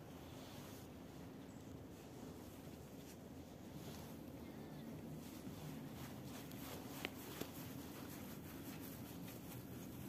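Faint footfalls of a small group of soldiers marching in step down stone stairs, under steady outdoor background noise, with one sharp click about seven seconds in.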